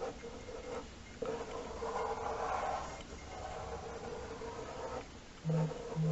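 Felt-tip ink pen scratching and rubbing on paper as a patch is filled in solid black. Near the end a phone sounds a notification in a few short buzzes.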